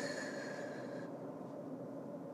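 Steady road and engine noise inside a moving car's cabin, with a faint high steady tone that stops about a second in.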